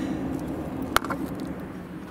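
Scraping at old silicone sealant around a boat's window opening: faint scratches and one sharp click about halfway through, over a steady low hum.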